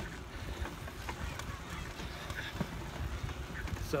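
Wind rumbling steadily on the microphone of a handheld camera during a tricycle ride, with a few faint clicks and rattles.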